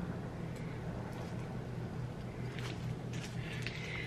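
Steady low hum of room tone with a few faint, scattered crinkles and clicks from a plastic snack-stick wrapper being worked at by hand, which will not tear open.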